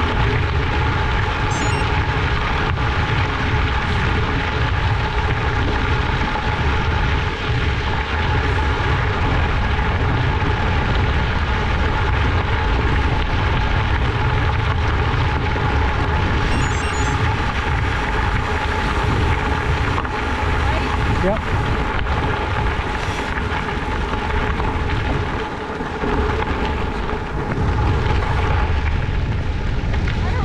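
Wind rushing over the microphone of a moving bicycle, with the crunch and rumble of tyres rolling on a gravel road and a steady hum underneath.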